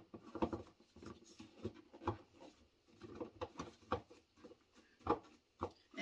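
Hard plastic parts of a GreenStalk vertical planter knocking and clicking irregularly as the top watering tray is lined up and hooked onto the top tier, with one louder knock about five seconds in.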